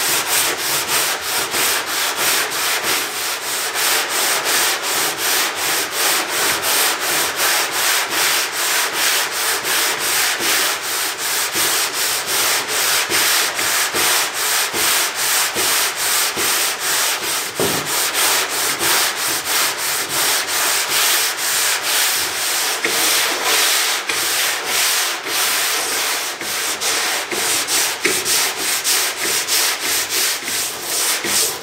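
Sandpaper on a hand sanding block rubbing over a car trunk lid's paint and body filler, in a steady rhythm of quick back-and-forth strokes. This is block sanding to level the panel's highs and lows before primer.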